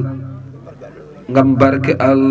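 A man's voice chanting in long held notes. It trails off at the start and comes back about one and a half seconds in.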